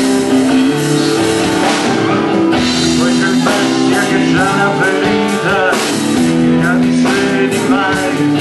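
Live rock band playing: electric guitars and a drum kit, with a man singing from about halfway through and again near the end.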